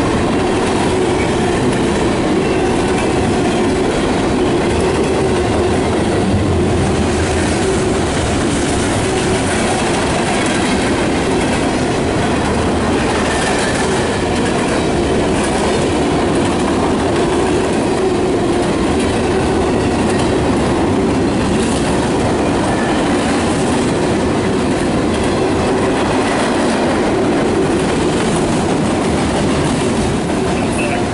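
CSX autorack freight cars rolling past at close range: a steady, loud rumble and clatter of steel wheels on rail.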